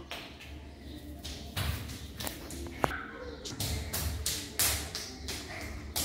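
Irregular taps and scuffs of bare feet and a small dog's paws running about on a tiled floor, with one sharper click just before three seconds in.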